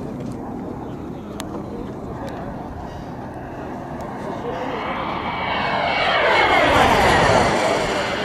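Turbine engine of a large radio-controlled model jet making a fly-by: its whine grows louder from about halfway through, peaks near the end, then drops in pitch as the jet passes.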